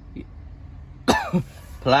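A man briefly clears his throat with a short cough about a second in, its pitch falling.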